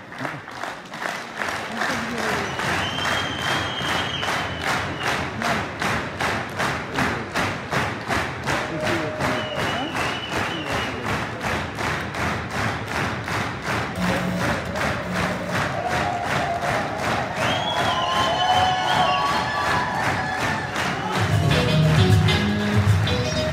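Crowd singing along to music with a steady beat, a little over two beats a second, with a few high held calls rising over it.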